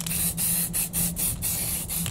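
Aerosol spray paint can hissing, one longer spray of about a second followed by short, broken bursts.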